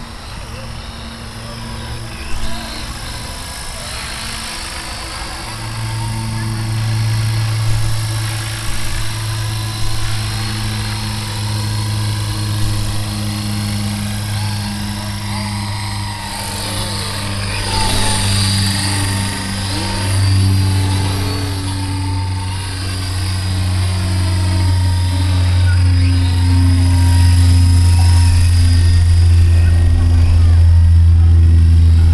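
Electric Ikarus Eco 7 RC helicopter in flight: the main rotor's steady low drone with a thin motor whine above it. The pitch bends as it sweeps close by about halfway through, and it gets louder near the end.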